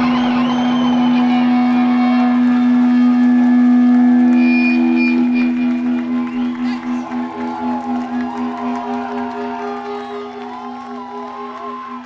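A live rock band's last chord rings out after the drums and bass stop, a steady held note with wavering, gliding effect tones above it. About halfway through it begins to pulse and it fades away gradually.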